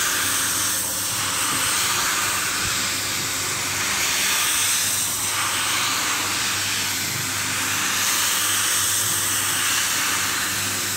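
Single-disc rotary floor scrubber running over a wet, soapy rug: a steady electric motor hum under the hiss of the rotating brush working through the foam.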